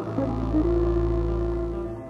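Electronic music: a deep, steady low drone with a single held tone above it, swelling in just after the start and fading near the end.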